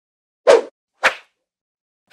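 Two short, sharp swish sound effects about half a second apart, the first fuller and lower, the second thinner and higher.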